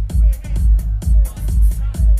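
House music played loud over a club sound system, with a heavy kick drum on a steady beat and hi-hats above it.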